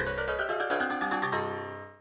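MIDI playback of a dense microtonal cluster of many overlapping keyboard-like notes in eighth-tones, thinning out and dying away near the end.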